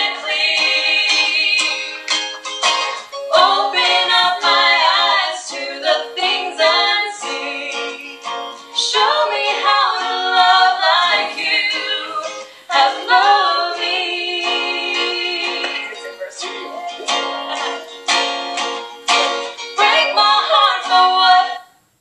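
Female singing to a strummed acoustic guitar. It is heard through a device's speaker over a video call, thin and without bass. The sound drops out briefly just before the end.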